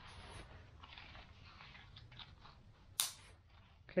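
Handling of a nylon compass pouch: faint rustling as the flap is folded over, then the pouch's buckle clicks shut with one sharp snap about three seconds in.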